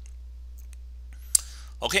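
A single sharp computer mouse click about one and a half seconds in, over a steady low hum.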